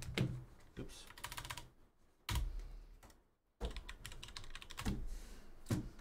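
Typing on a computer keyboard: quick runs of key clicks broken by short pauses, as team names are entered for a random draw.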